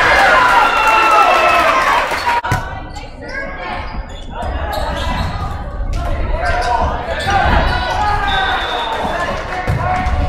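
Volleyball being played in a school gymnasium: players and spectators shouting, with a few sharp thuds of the ball being hit, all echoing in the hall. The noise cuts off suddenly about two and a half seconds in and builds again a couple of seconds later.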